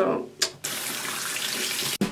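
Water running from a tap into a bathroom sink: a steady rush that starts suddenly about half a second in and stops abruptly near the end.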